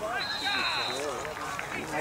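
Shouting voices from the rugby pitch, with a single steady whistle blast lasting under a second near the start, a referee's whistle stopping play.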